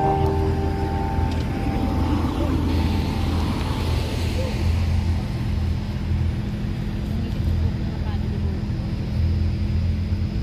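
Road traffic at a junction, with a vehicle passing around the middle, mixed with background music.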